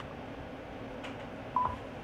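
One short high beep about one and a half seconds in, the tone of a film countdown leader, over a faint steady hiss.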